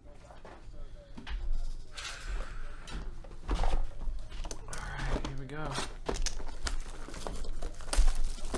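Ascension trading card box being torn open and handled, with plastic wrap and cardboard crinkling and rustling and scattered sharp knocks.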